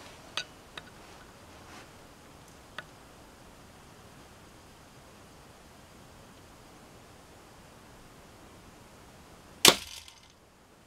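Miniature horn-and-sinew composite crossbow of about 35 lb draw shooting a light bamboo bolt. A few faint handling clicks come first, then near the end one sharp crack as it fires into a cardboard target.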